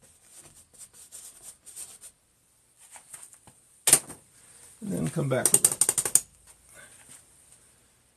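Stiff bristle brush dabbing and scrubbing oil paint onto a stretched canvas in short, light strokes, with a sharp knock about halfway through and a brief run of rapid rattling clicks just after.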